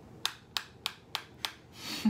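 A makeup brush worked in the pan of a round metal bronzer compact: five short, sharp scratchy strokes, evenly spaced at about three a second.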